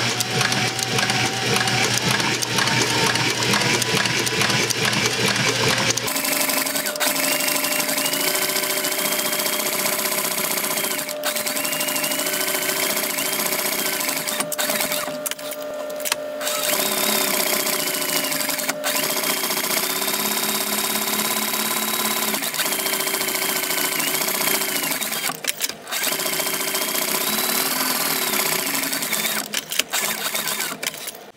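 Cobra Class 4 leather sewing machine stitching through heavy leather, running in long stretches with its motor pitch rising and falling. It stops briefly about halfway through and again a few seconds later.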